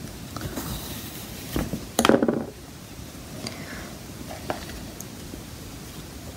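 Quiet handling sounds of yarn and a metal crochet hook as yarn ends are pulled through a crocheted strap, with a few faint ticks and one short louder clatter about two seconds in.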